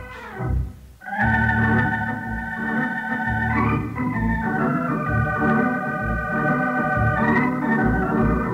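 Organ music bridge: held organ chords that begin about a second in and change a few times.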